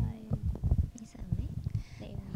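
Handheld microphone being handled and passed from one person to another: a run of irregular low bumps and rustles from the mic body.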